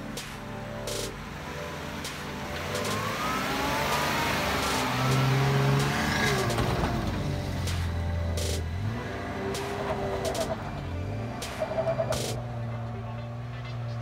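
Jeep Wrangler's 3.6-litre V6 engine revving under load as it climbs a steep sandy hill, its pitch rising and falling with the throttle.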